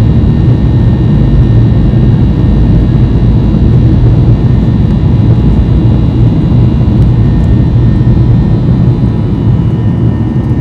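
Boeing 737-800's CFM56-7B turbofan engines at takeoff thrust, heard inside the cabin during the takeoff roll. A loud, steady low rumble carries a steady high whine from the engine fans.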